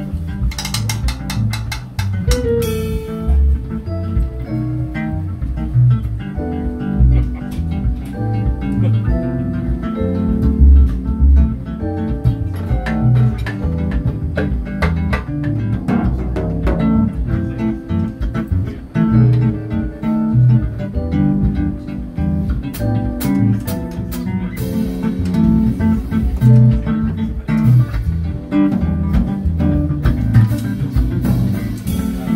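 A live band of electric guitar, electric bass, drum kit and keyboard playing an instrumental huapango groove in a triple feel, with the bass and drums loud underneath.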